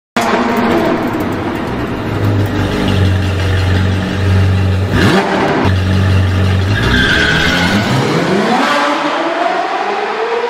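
A car engine running with a steady low drone, then revving, its pitch climbing in rising sweeps through the second half.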